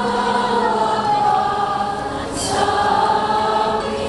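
Choir singing, with long held notes that change pitch one to the next, carried over outdoor loudspeakers.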